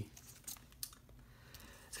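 A few faint, short clicks from a Blu-ray case and its cardboard slipcover being handled and turned over in the hands.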